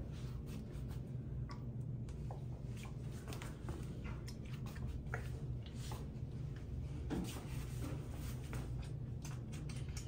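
Soft rustling and small clicks of gloved hands handling a dog's ear and a plastic ear-cleaner squeeze bottle as solution is put into the ear canal, over a steady low room hum.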